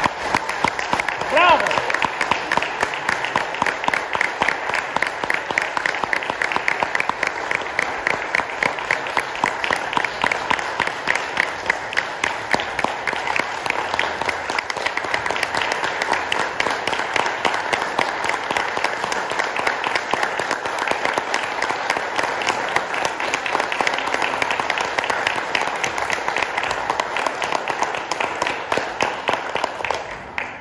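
Audience applauding at the end of a vocal recital: steady, dense clapping that holds at an even level.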